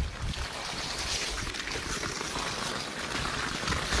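Steady rushing, scraping hiss of a person sliding down a snowy slope on his backside, with wind rumbling on the phone's microphone.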